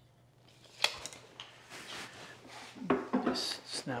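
Workbench handling noises: a light click about a second in as a pencil is set down, soft rustling, then a louder wooden knock and scrape near the end as a wooden bench hook is picked up.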